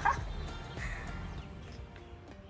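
A pet's short cry at the very start, then fainter sounds over background music.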